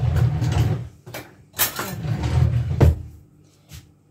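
A kitchen drawer being slid open and then pushed shut, two rumbling slides with a knock as it closes, while a spoon is fetched.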